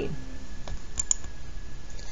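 Three light clicks about a second in, over a faint steady tone and low background noise.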